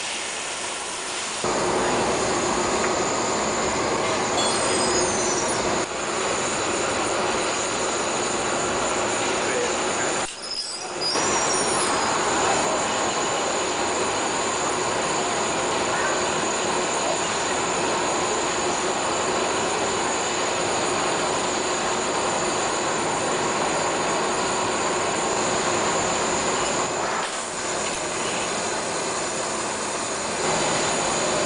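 Steady roar of a glassworks' gas-fired furnaces and burners, dropping briefly about ten seconds in.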